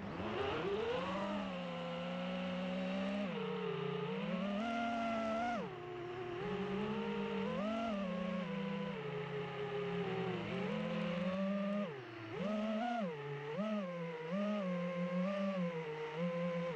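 FPV quadcopter's electric motors and propellers whining. The pitch rises as they spin up about a second in, then falls and climbs with the throttle, with several quick blips near the end.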